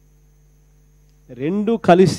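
A pause with only a faint steady electrical hum, then a man starts speaking into a microphone a little over a second in.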